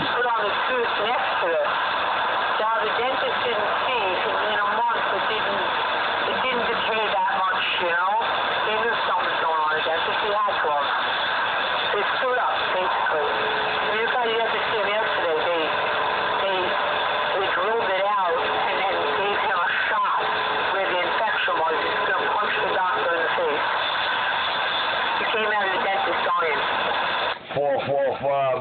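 CB radio speaker playing an incoming transmission: distorted, unintelligible voices warbling and squealing over steady static, in the radio's narrow, tinny audio. The signal drops out briefly near the end.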